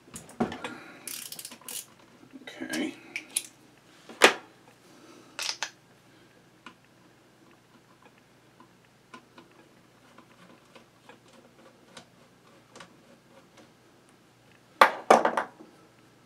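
Scattered metal clicks and knocks of tools and parts being worked by hand on an old Singer 127 sewing machine head, louder in the first few seconds, with a cluster of clattering knocks near the end.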